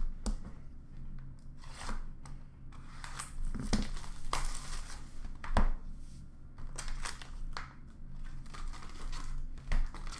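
Plastic trading-card pack wrappers being torn open and crinkled while cards are handled, in irregular crackly bursts, with one sharp tap about five and a half seconds in.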